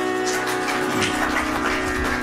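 Tanpura drone, its strings plucked one after another in a steady cycle over sustained drone tones.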